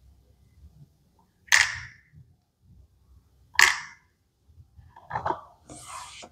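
Small plastic dollhouse toy pieces clacking as they are set down and pushed into place: two sharp clacks about two seconds apart, then a few lighter knocks and a brief scrape near the end.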